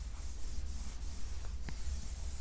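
Stylus and eraser rubbing and scratching across the surface of an interactive whiteboard as the old working is wiped off and new writing begins, with a brief squeak near the end.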